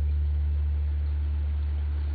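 A steady low drone through the concert PA, with no beat or melody, slowly fading.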